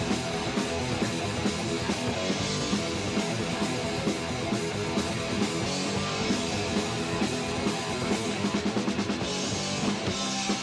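Punk rock band playing live: distorted electric guitars, bass and drum kit, with a quick run of drum hits near the end.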